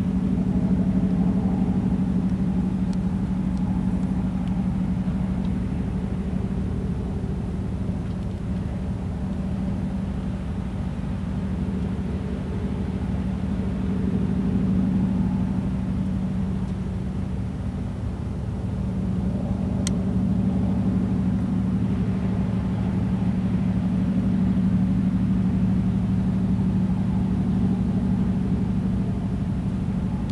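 A steady low mechanical hum that slowly swells and eases in loudness.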